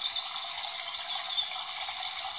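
Steady high hiss of a background ambience bed, with a few faint high chirps.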